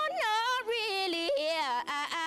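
Woman singing a wordless melismatic run on one vowel over an acoustic guitar, her voice sliding up and then stepping down through bending notes with vibrato, with a short break near the end.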